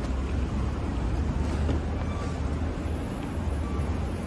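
Steady outdoor city ambience: a constant low rumble with an even hiss over it, like passing street traffic. There are no distinct events, only a few faint clicks.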